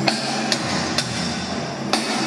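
Sharp percussive strikes, about two a second, keeping a steady beat over a steady haze of arena noise.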